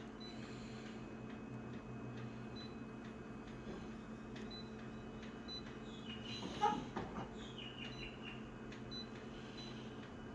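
Photocopier touch-panel key beeps: short high tones, one after another, as settings are pressed, over the copier's steady hum. A brief louder sound with sliding pitch comes about two-thirds of the way in.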